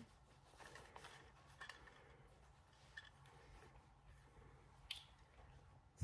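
Near silence with a few faint rustles and small clicks as sunglasses are drawn out of a soft cloth drawstring pouch; the sharpest click comes about five seconds in.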